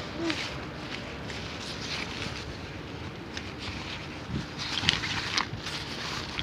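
Rustling and handling of a cloth shopping bag over steady outdoor background noise, with a crinkly rustle near the end.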